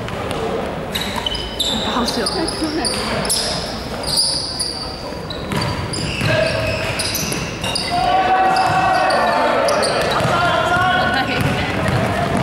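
Basketball game on a hardwood court in a large gym: the ball bouncing, sneakers squeaking on the floor, and players calling out, echoing in the hall. The shouting grows louder in the second half.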